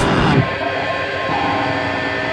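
A grindcore band's full-band thrash of drums and distorted guitar cuts off about a third of a second in, leaving sustained ringing guitar tones with amp feedback. One of the held notes steps down in pitch partway through.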